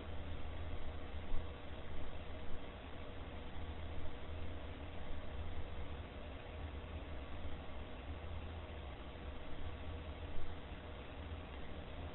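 Steady low hum and hiss of room noise in a booking room, with a few faint knocks, about a second and a half in and again near the end.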